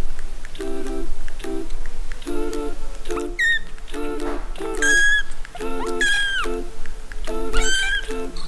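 Background music with a steady repeating pattern, over which a three-week-old kitten mews about four times in the second half, high-pitched calls that bend up or down.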